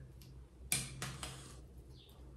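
Makeup containers being handled on a bathroom counter: three quick, sharp plastic clicks and taps about a third of a second apart, over a steady low hum.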